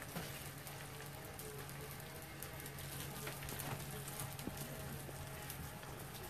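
Faint steady hiss dotted with small scattered crackles, over a low steady hum.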